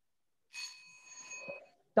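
A bell rung once about half a second in, ringing with a few clear, steady high tones for about a second before fading. It marks the end of the five seconds given to answer.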